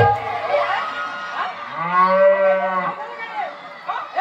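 A human voice drawn out into one long call of about a second, starting a little under two seconds in, pitched and arching slightly up and then down, like a mock moo. Shorter bits of voice come before it.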